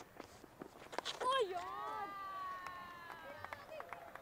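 A cricket bat strikes the ball with a sharp knock about a second in. A long, drawn-out vocal exclamation with slowly falling pitch follows, and another voice starts near the end.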